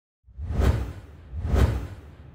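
Two whoosh sound effects of an animated logo intro, about a second apart, each swelling and fading with a deep rumble underneath.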